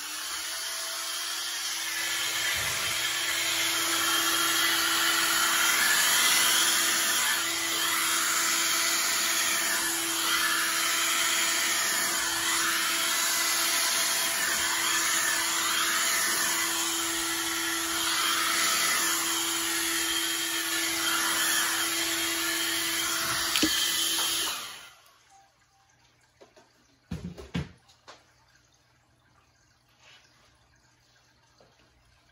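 Hair dryer running steadily at full blow, with a constant motor whine under the rush of air. It is switched off about 25 seconds in, and a couple of light knocks follow.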